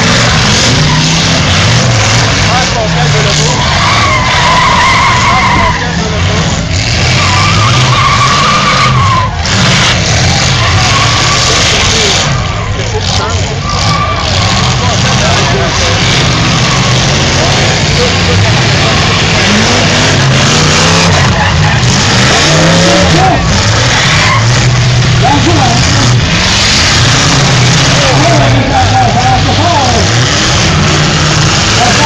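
Demolition derby cars' engines revving hard as they ram and shove one another, with tyres squealing briefly around four and eight seconds in, over a crowd's voices.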